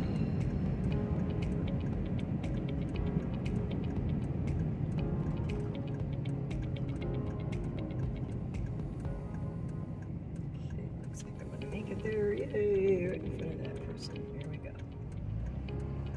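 Pickup truck driving on a rough paved highway, heard from inside the cab: a steady low road and engine rumble with many faint clicks over it.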